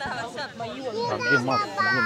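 Speech only: people talking, with a high-pitched voice in the second half.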